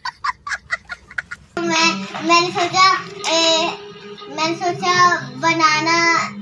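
A young child laughing in short rapid bursts for about a second and a half. Then a child's high-pitched voice talks in a sing-song way.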